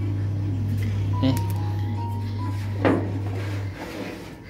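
A low steady hum that stops shortly before the end, under soft background music, with one short knock about three seconds in while the opened dryer's housing is handled.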